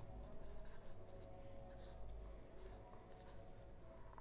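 Marker pen writing on a whiteboard: faint, short scratchy strokes in small clusters, with pauses between them.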